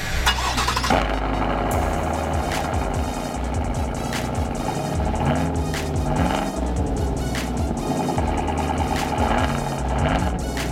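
GMC Sierra AT4's 6.2-litre V8 starting through a newly fitted Corsa cat-back exhaust, with a burst of sound about a second in, then running steadily. Music plays over it.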